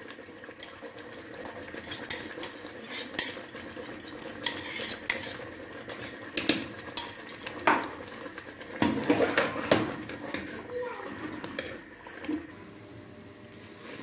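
Steel spoon stirring thick saag in an aluminium pressure-cooker pot, knocking and scraping against the metal sides in irregular clinks as flour paste is worked in. A busier run of clinks comes about nine seconds in.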